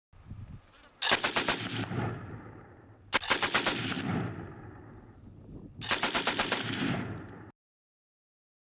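An automatic rifle firing three short full-auto bursts of several rapid shots each, about two and a half seconds apart. Each burst is followed by a rolling echo.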